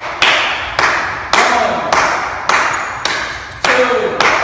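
Sharp, evenly spaced percussive hits, about two a second, each echoing briefly in a large hall, keeping a steady beat for dancers rehearsing a routine.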